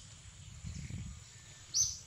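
One short, high bird chirp near the end, over a dull low rumble about halfway through and faint steady outdoor background noise.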